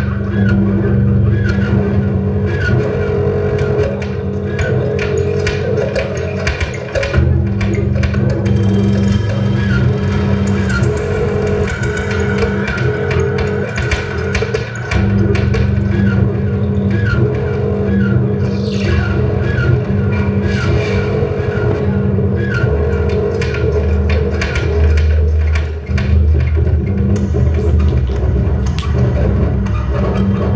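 Loud live electronic music from tabletop electronics: a dense low drone under a regularly repeating pattern of short high blips and scattered clicks.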